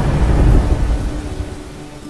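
Recorded thunder rumbling over rain in a sped-up song's intro. The rumble swells about half a second in and dies away, over a faint held note.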